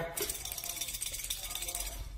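Xóc đĩa shake: game counters rattling inside a white ceramic bowl upended on a plate, shaken rapidly by hand, giving a fast, even clatter.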